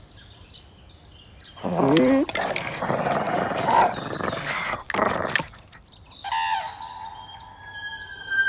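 Faint bird chirps, then a dog's loud, rough vocalising for about four seconds, followed by a short falling whine.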